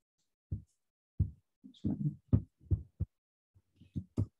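About nine short, soft thumps at irregular intervals, low and dull, with silence in between.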